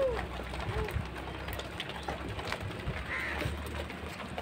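A flock of sheep milling in a pen, with a steady low rumble under a few faint short calls, the clearest right at the start.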